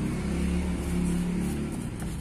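A low, steady engine hum, like a motor vehicle running close by, that eases off slightly near the end.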